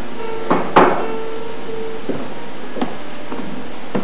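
Two knocks, the second louder, as a pitcher and other objects are set down on a wooden table on a stage, followed by a few lighter knocks of footsteps on the stage floor. A faint steady hum runs underneath for the first couple of seconds.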